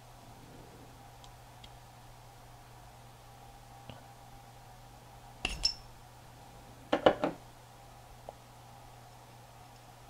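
Small metal parts of a VCR capstan motor being handled: a sharp metallic clink about five and a half seconds in, then a quick cluster of clicks about a second later, as the rotor and its capstan shaft come out of the motor's bushing and away from the stator.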